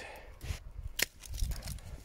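Hand pruning secateurs snipping through a rose stem, a single sharp snip about halfway through, with softer rustling of stems and handling around it.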